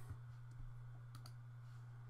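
A few faint clicks of a computer mouse, spaced irregularly, over a low steady hum.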